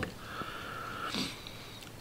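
A man breathing through his nose between sentences, with a short sniff a little over a second in.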